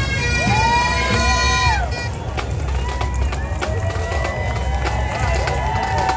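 Bagpipes playing over crowd voices and shouts; the piping breaks off about two seconds in, and a held pipe note comes back in the second half.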